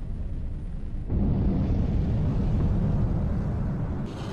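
Jet fighter engines in a film sound mix: a low, steady rumble that jumps to a louder, deeper roar about a second in.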